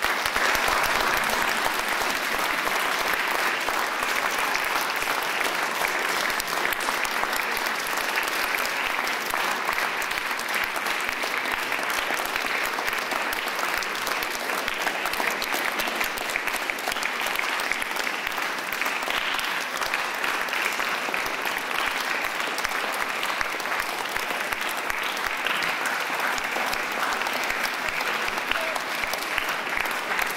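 Concert audience applauding, many hands clapping in a dense, steady patter that breaks out abruptly at the start and carries on without fading.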